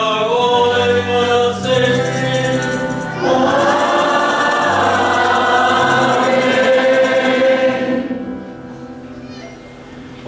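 Church congregation and choir singing together in sustained, reverberant notes, with the level dropping away near the end.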